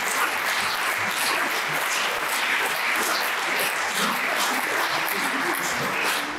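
Audience applause, steady throughout.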